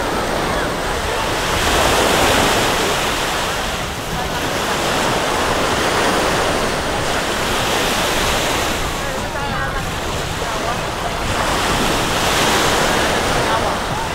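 Small, gentle sea waves breaking and washing up on a sandy shore, the wash swelling and fading every few seconds, with wind buffeting the microphone.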